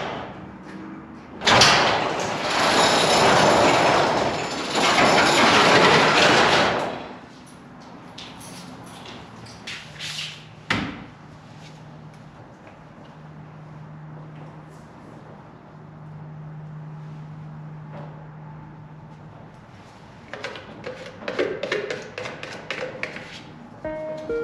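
Steel roll-up door rattling for about five seconds as it rolls. It is followed by a single sharp knock, then faint handling clicks and rustling near the end.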